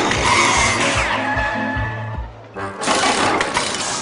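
Cartoon background music with sound effects of an arrow in flight: a falling whistle about a second in, then a broad rushing whoosh from near three seconds.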